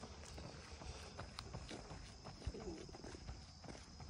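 Faint footsteps of someone running on asphalt: quick, light taps, over a low outdoor rumble.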